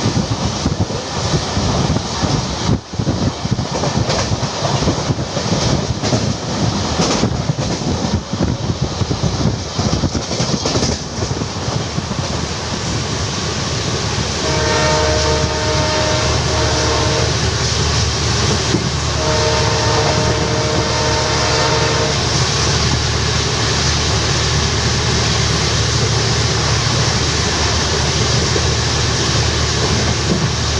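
Passenger train running at speed, heard from an open coach door: wheels clattering over rail joints and points, settling into a steadier rolling noise. Midway the locomotive's horn sounds two long blasts of about three seconds each.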